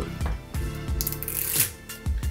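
Background music, with the cork stopper of a new Elijah Craig Barrel Proof bourbon bottle being twisted out: a brief scraping rub about a second in as the bottle is first opened.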